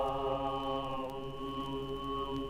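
Mongolian throat singing: a steady low drone with a single whistle-like overtone held above it, the overtone stepping down to a new pitch about halfway through.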